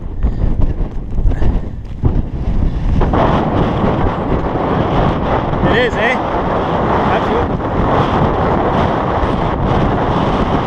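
Strong wind buffeting a GoPro's microphone: a gusty low rumble that becomes a denser, louder, steady rushing noise about three seconds in.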